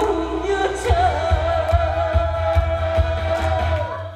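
A man singing a Korean popular song live into a microphone over a backing track with a steady bass beat, holding one long note with vibrato from about a second in until near the end.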